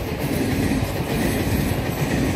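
A railway train rolling past, a steady rumble of its wheels on the track.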